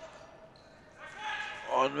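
Futsal game play in a large sports hall: a futsal ball being played on the wooden court, with faint voices in the hall. A man's commentary starts near the end.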